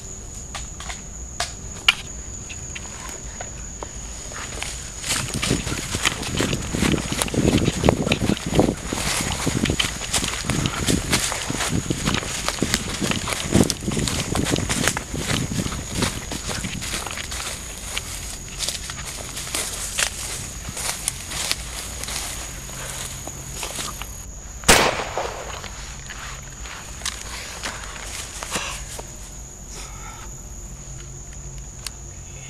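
Fast footsteps crashing through forest undergrowth, with dense rustling and snapping of leaves and twigs, and one sharp bang about 25 seconds in. A steady high insect drone runs underneath.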